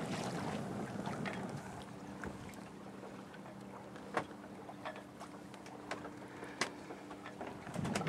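Sailboat under sail in a light breeze: a steady wash of water and wind with a faint low hum beneath, broken by a few sharp, isolated clicks.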